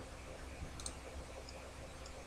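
A few faint computer mouse clicks over a low, steady hum.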